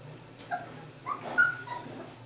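Rhodesian Ridgeback puppies yipping and whimpering: about four short, high calls in quick succession, the loudest about halfway through.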